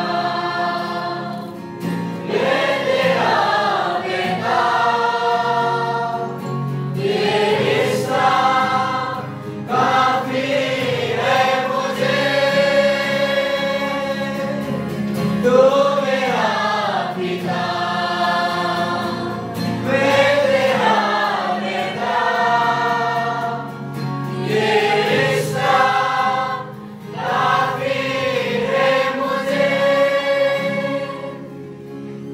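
Choir singing a slow worship song with long held notes over a steady instrumental backing.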